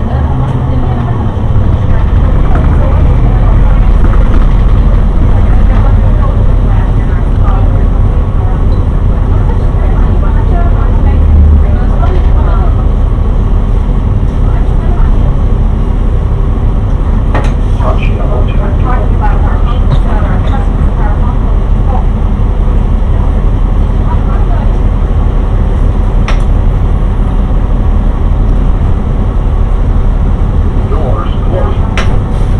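City bus in motion, heard from inside the passenger cabin: a steady deep engine and road rumble.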